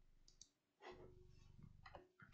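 Near silence with a few faint, short clicks from a computer being worked as a desktop calculator is opened and used.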